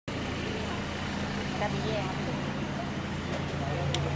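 Street ambience dominated by the steady low hum of a vehicle engine idling, with faint voices of passers-by. A single sharp click comes just before the end.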